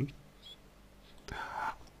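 A man's voice between phrases: a drawn-out spoken 'a' trails off at the start, then after a pause a short breathy, unpitched whisper-like sound about a second and a half in, just before he speaks again.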